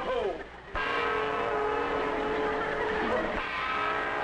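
A held chord of several steady tones, like an organ or a horn section, starts abruptly about a second in, shifts near three seconds in, and is held again.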